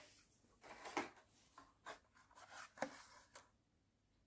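Blister-packed toy cars being handled: a string of short plastic rustles and taps, the loudest about a second in and just before three seconds.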